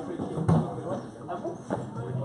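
Padel rally: a sharp hit of the ball about half a second in, the loudest sound, and another near the end, with spectators talking close by.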